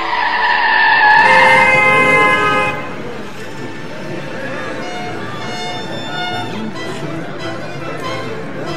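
Recorded stage soundtrack over a hall's sound system: loud sustained horn-like tones, in the manner of street traffic, for about the first three seconds, then quieter instrumental music with violin.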